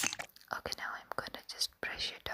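Close, quick whispering broken by many sharp clicks.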